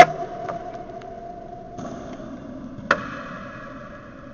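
Knocks and thumps from a hand-held camera being handled and set down. A sharp, loud knock comes at the start, followed by a short steady ringing tone, and a second sharp knock comes about three seconds in, against a faint steady hiss.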